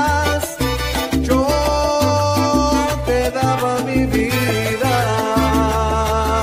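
Salsa romántica music playing: a full band mix with a syncopated bass line, busy percussion and long held melody notes.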